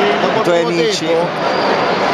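A man talking, over a steady background din.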